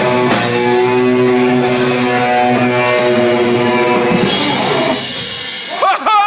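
Live sludge-metal band with distorted electric guitars, bass and drums holding a long, sustained final chord that rings and then dies down about five seconds in. A short rising squeal comes near the end.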